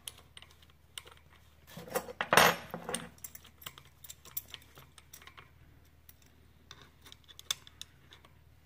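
Scattered metal clicks and clinks of a splined freewheel tool and wrench working a screw-on freewheel as it is tightened onto a Bafang 500 W rear hub motor, with a louder metallic clatter about two seconds in.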